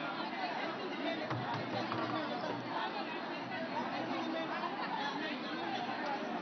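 Crowd chatter: many people talking at once in a steady babble of overlapping voices, with no single voice standing out.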